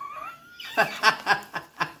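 A man laughing: a short rising sound, then a quick string of about five bursts of laughter, roughly four a second.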